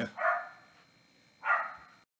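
A dog barking twice, the barks about a second and a quarter apart.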